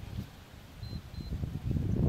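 Wind rumbling on the microphone, with two short high electronic beeps about a second in: an interval timer signalling the start of a work round.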